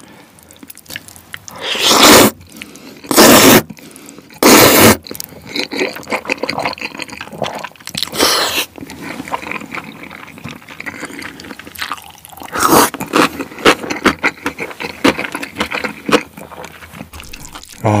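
Close-miked eating of fried noodles: several loud slurps, three of them in the first five seconds, and wet chewing and mouth clicks in between.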